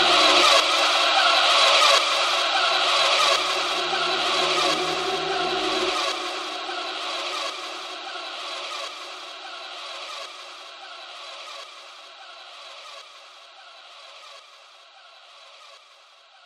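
Closing bars of a drum and bass track: a dense, hissy wash of sound over a faint beat. The bass cuts out about six seconds in, and the rest fades out steadily.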